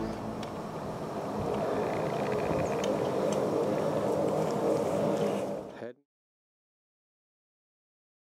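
Airplane engine running in the distance, a steady drone that grows a little louder and then cuts off suddenly about six seconds in.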